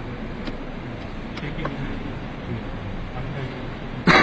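Indistinct low voices of a small crowd over steady background noise, with a few faint clicks.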